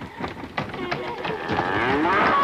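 Animal cries with cow-like lowing, gliding up and down in pitch. They swell into a loud, drawn-out call about one and a half seconds in.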